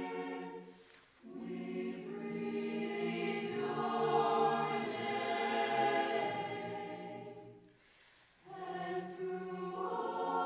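Mixed youth choir singing a cappella, holding sustained chords. The sound breaks off briefly about a second in and again near eight seconds, then the voices come back in together.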